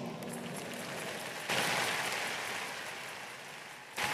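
Faint applause from a congregation in a large hall, swelling about a second and a half in and slowly dying away.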